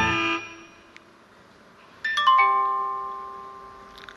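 Plucked-string music ends just after the start. After about a second and a half of quiet, a chime of about four bell-like notes, each lower than the one before, sounds about two seconds in and rings on, slowly fading.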